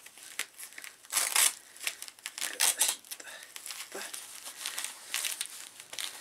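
Hook-and-loop (Velcro) waistband closure on polyester MMA shorts being pulled open and pressed shut, with fabric rustling: several short rips, the loudest about a second in.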